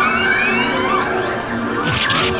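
Electronic arcade music and sound effects with many sweeping, gliding tones, as from a crane game machine and the arcade around it while the claw descends.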